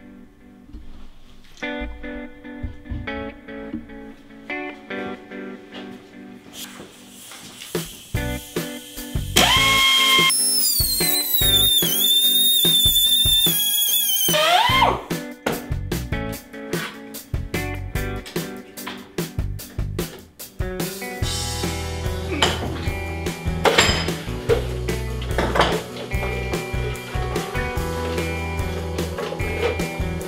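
Background guitar music throughout. About nine seconds in, a small high-speed rotary cut-off tool spins up to a whine, cuts for about five seconds, then winds down as bolt ends are cut off.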